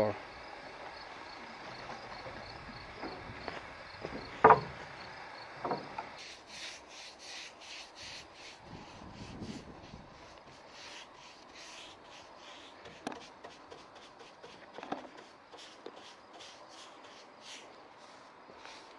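Paintbrush strokes spreading wood stain across a hardwood workbench top: a run of short, repeated swishes, a few per second, starting about six seconds in. Before that, insects chirp steadily and there is one sharp knock about four seconds in.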